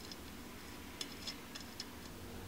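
A few faint, sharp ticks in the second half as a small metal deck pin is turned by hand in a hole drilled in a metal scooter deck. The hole has been drilled too deep, so the pin goes in without biting.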